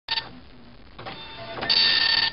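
Dot matrix printer printing: a short buzzing burst at the very start, then a louder, steady high-pitched buzz that builds up in the second half.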